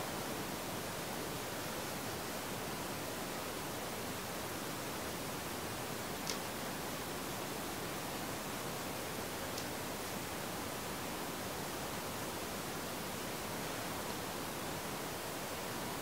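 Steady hiss of the recording's background noise, with two faint ticks partway through.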